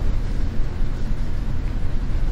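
Steady low-pitched rumble of background noise with no distinct events.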